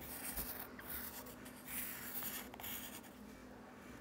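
Yellow wooden pencil scratching on lined notebook paper in short drawing strokes, busiest in the first three seconds and fainter near the end.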